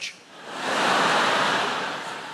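Large theatre audience laughing and applauding at a punchline. The sound swells from about half a second in and slowly dies away.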